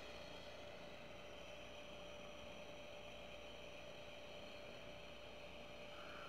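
Faint room tone: a steady low hiss with a low hum and a thin, steady high-pitched whine underneath.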